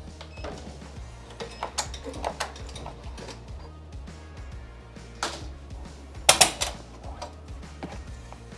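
Sharp plastic-and-metal clicks and clacks as a hooped cap frame is unlatched and pulled off a Ricoma TC-1501 embroidery machine's cap driver. The clicks are scattered, with the loudest a quick cluster of clacks a little after six seconds in, over steady background music.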